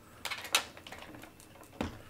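Hands handling and pressing fabric mop pads onto the plastic mop plates of a robot vacuum: soft rubbing and a few light clicks in the first half second, then a sharper click near the end.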